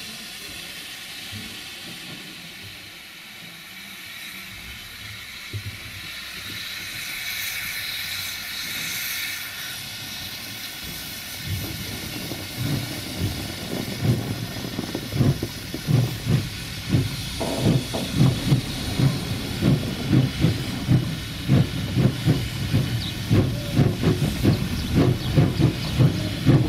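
Narrow-gauge steam locomotive hissing steam, then getting under way. About halfway through, its exhaust chuffs begin; they grow louder and quicken to about two a second.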